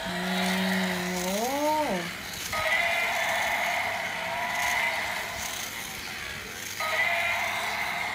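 A woman's drawn-out "oh", rising in pitch, then a battery-powered toy's small motor and plastic gears whirring steadily, with a short break near the end.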